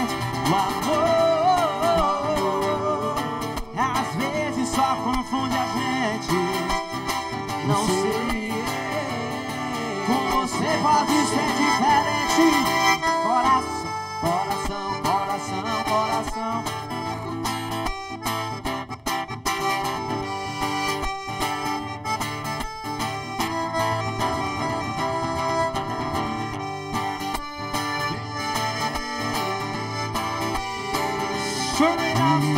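Live accordion and acoustic guitar playing a tune together, with a continuous wavering melody over sustained chords.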